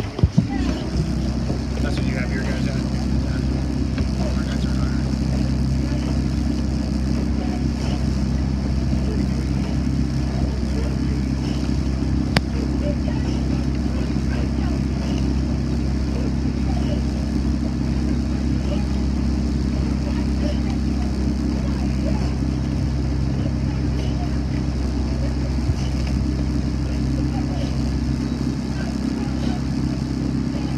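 Outboard motor of a following launch running at a steady cruising speed, a constant low drone, with one sharp click about twelve seconds in.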